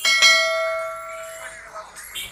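Notification-bell sound effect of a subscribe-button animation: one bright, bell-like ding that starts suddenly and rings on, fading out over about a second and a half.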